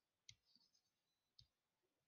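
Near silence broken by two faint computer mouse clicks about a second apart.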